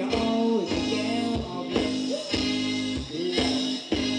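A live Thai ramwong dance band playing, with a sung melody over a steady beat of about two strokes a second.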